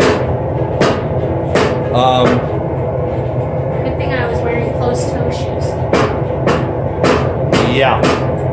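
A steady low machine hum of workshop equipment runs throughout, with about ten sharp knocks and clacks of metal tools spread through it. A woman laughs briefly about two seconds in.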